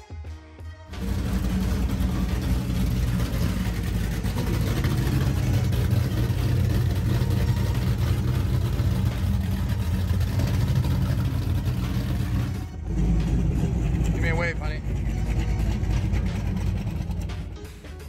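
Powerboat engines running at speed under a dense rush of noise. It starts suddenly about a second in, dips briefly about two-thirds of the way through, and fades just before the end, with a short call of a voice near the end.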